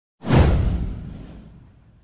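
An intro whoosh sound effect with a deep boom. It hits suddenly just after the start, sweeps downward in pitch and fades away over about a second and a half.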